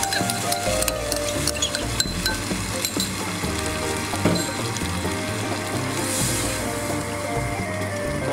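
Tomato sauce sizzling in an enamel pot while a wooden spoon stirs it, with scattered light clicks of the spoon against the pot.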